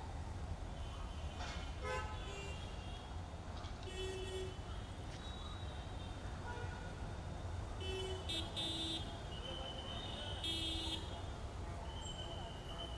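Steady rumble of road traffic, with several short vehicle horn toots scattered through it.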